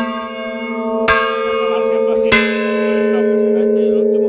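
Large bronze church bell struck twice, about a second apart, each stroke ringing out over the bell's long sustained ring, which carries on from an earlier stroke.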